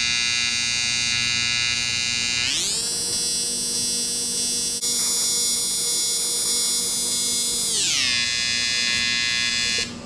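AC TIG welding arc buzzing on aluminum diamond plate, a steady electric buzz that steps up in pitch a couple of seconds in and drops back down near the end, with a brief break about halfway. The arc cuts off suddenly at the end.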